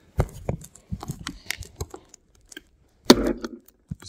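Repeated clicking of the switch and knocks at the housing of an electric trailer tongue jack, with a louder knock about three seconds in. The jack is balky: it won't run reliably from the switch and only moves when the housing is smacked.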